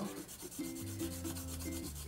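Colored pencil shading back and forth on drawing paper with light pressure, a soft steady scratchy rubbing of repeated strokes.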